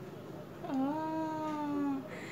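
A young girl's voice holding one long, drawn-out note for just over a second, starting about two-thirds of a second in.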